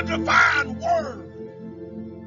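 Slow ambient background music with sustained tones. Two short arching cries sound over it within the first second.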